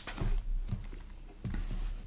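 A few soft taps and knocks as hardcover books are set down and picked up on a desk.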